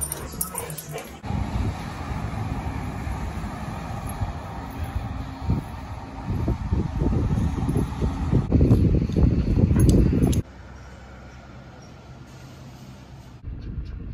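Wind buffeting the microphone as a gusting low rush that swells near the end and then cuts off suddenly. In the first second, two dogs scuffle in play.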